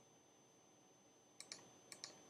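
Computer mouse button clicking a few times in the second half, against near-silent room tone.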